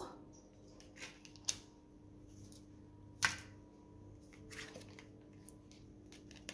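Oracle cards being handled and laid down: a few soft clicks and taps, the sharpest about three seconds in, over a faint steady hum.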